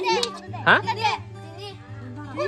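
Children's voices, with short exclamations and chatter, the loudest just under a second in, over steady background music.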